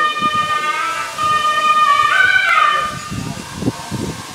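A wind instrument holding one long, loud high note. About two seconds in it steps briefly up to a higher note, drops back, and fades out near the end.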